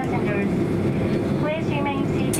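A flight attendant's announcement over the aircraft cabin PA, with speech near the start and again near the end. Under it runs the steady low hum of a Boeing 767-300 cabin at the gate, with the air conditioning running.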